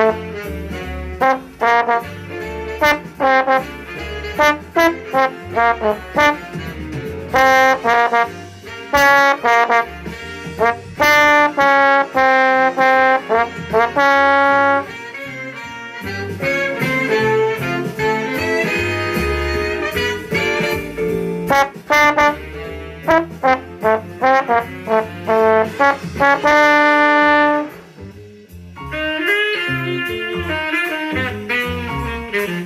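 Big-band swing jazz: a brass section playing punchy, short stabs and held notes over bass and drums. A live trombone plays along at the start.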